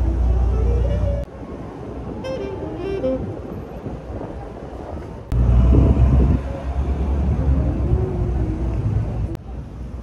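Outdoor city ambience: a low traffic rumble with scattered voices of people nearby. The sound changes abruptly about a second in, again around the middle and near the end, where the shots cut.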